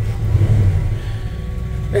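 Chevy 350 small-block V8 in a 1966 Chevy C10 pickup, fitted with a freshened-up cam, running at idle: a steady low rumble heard from inside the cab that eases a little about a second in.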